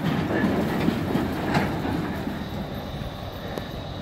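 Wheeled steel barrier wall sections rattling and rumbling as they are towed over pavement behind a pickup truck, the noise fading steadily as the towed wall pulls away and slows.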